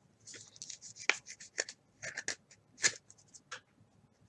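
A trading card being slid into a clear rigid plastic holder: crisp plastic-and-card rustling with a quick string of clicks, two sharper snaps about a second in and near the three-second mark.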